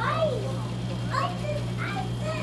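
A young child's high-pitched wordless vocalizing: three short calls, the first with a falling pitch, over a steady low hum.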